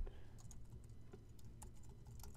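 Faint, scattered clicks of computer keyboard keys being pressed, among them repeated Ctrl+C presses in a terminal that is not responding to typing.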